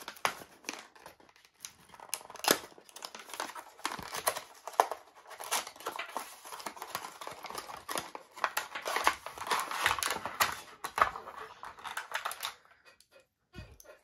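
A cardboard box being opened and a metal phone mount unpacked by hand from its plastic packaging: cardboard scraping, plastic crinkling and irregular clicks and rustles, dying down shortly before the end.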